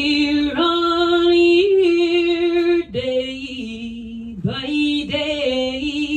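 A woman singing a slow ballad unaccompanied, holding long notes in three phrases with short breaks between them.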